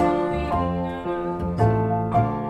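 Live acoustic trio of bowed violin, grand piano and plucked double bass playing a slow song, the held notes changing about half a second in and again near the end.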